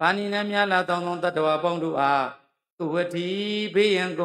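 A Buddhist monk chanting Pali paritta verses in a steady, level-pitched recitation, in two phrases with a short breath pause about two and a half seconds in.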